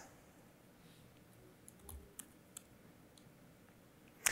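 Near silence: room tone with a handful of faint clicks from computer use around the middle.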